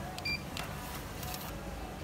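Restaurant meal-ticket vending machine: a short high electronic beep as the button is pressed, then a few sharp clicks as it issues the ticket.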